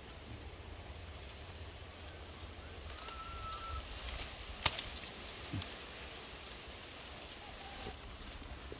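Rustling and handling of a leafy branch against a steady low rumble, with one short whistle-like bird note about three seconds in. A single sharp click about halfway through is the loudest sound, and a lighter click follows a second later.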